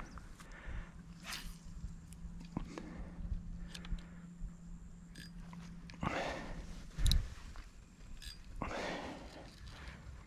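Close handling noises from an angler's hands, fish and rod: scattered small clicks and rustles, a low steady hum for the first half, and one heavy thump about seven seconds in.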